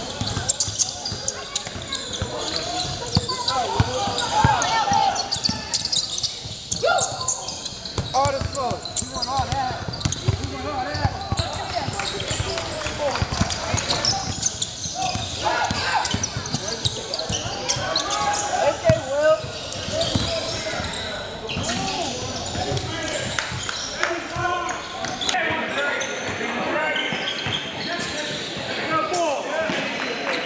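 Basketball bouncing on a hardwood gym floor, with players' footsteps and indistinct voices and shouts throughout.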